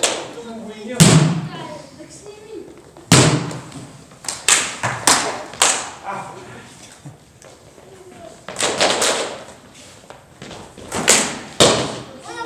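Hard sparring sticks striking padded armour and masks in a stick-fighting bout: about ten sharp hits at uneven intervals, some coming in quick pairs.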